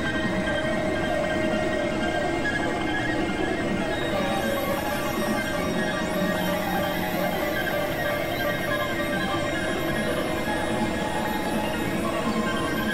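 Experimental electronic drone music: many layered synthesizer tones held over noise at a steady level, with a faint high hiss joining about four seconds in.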